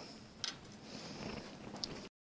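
Faint handling noises as tools are moved by hand: a light knock about half a second in, low rustling, and a small sharp click near the end.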